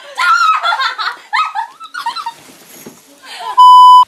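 Young women laughing and talking in high, excited voices, then near the end a short, loud electronic beep at one steady pitch, edited into the soundtrack.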